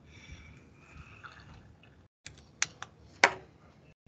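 A handful of sharp clicks and knocks from a laptop keyboard being worked and handled, the loudest about three and a quarter seconds in, after a faint room murmur.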